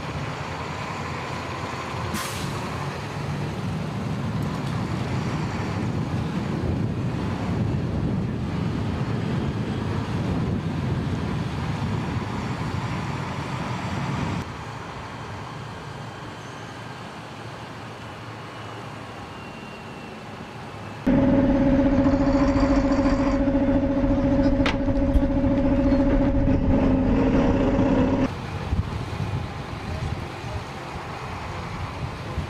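Military armoured vehicles driving: steady engine and road rumble. About two-thirds of the way through, a much louder, steady engine drone with a strong hum sets in for several seconds and then stops abruptly.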